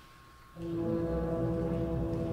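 Symphony orchestra after a brief hush, coming in about half a second in with a loud, sustained full chord that holds steady, with strong low notes.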